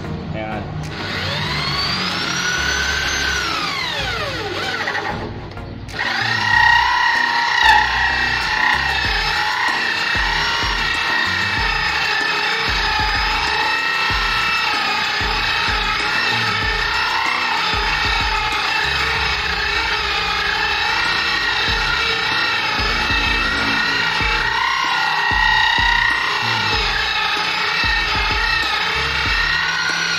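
Electric drill turning a hole saw into a wooden door: the motor whine climbs, then winds down over the first few seconds. From about six seconds in it runs steadily under load, its pitch wavering slightly as the saw cuts into the wood.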